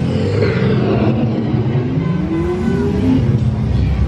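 Dark-ride vehicle setting off, with a loud low rumble and rising, engine-like whines from the ride's sound effects.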